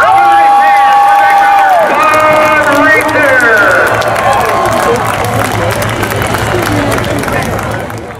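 People whooping and cheering, with long drawn-out shouts held for a second or two, two voices overlapping at first, then shorter rising and falling calls.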